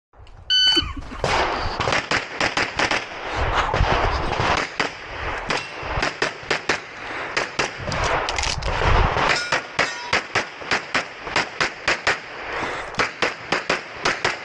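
A shot timer's start beep about half a second in, then a pistol string of fire: many rapid shots, often in quick pairs, fired while moving through a practical-shooting stage.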